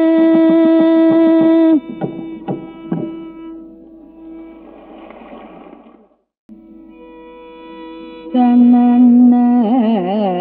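Carnatic classical music: a loud held note with drum strokes under it is cut off about two seconds in, a few last percussion strokes die away, and after a short break a new held note begins near the end, bending in wide, wavering gamaka swings.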